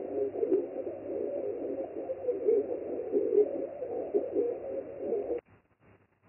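A recording of an ear-ringing sound, sold as "tinnitus", shifted down octaves into the human speech range, playing back through a computer speaker as a wavering, garbled noise with no clear words. It cuts off suddenly near the end.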